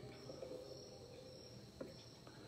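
Faint, high-pitched insect chirping in a steady pulsing trill, with a single small click near the end.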